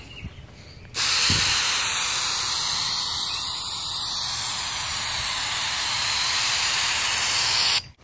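Aerosol can of 3M headliner spray adhesive spraying onto a headliner board in one long continuous hiss, starting about a second in and cutting off just before the end.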